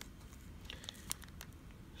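Faint crinkling and small clicks of a thin plastic coin bag being handled between the fingers.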